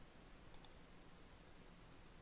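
Faint computer mouse clicks against near-silent room tone: two quick clicks about half a second in, and another near the end.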